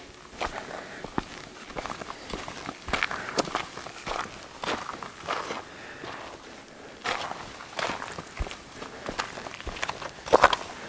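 Footsteps of a person walking on sandstone rock, one short step sound roughly every half second to second.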